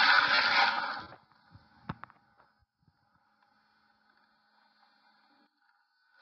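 A loud burst of noise for about a second, then a single sharp knock about two seconds in, followed by near silence.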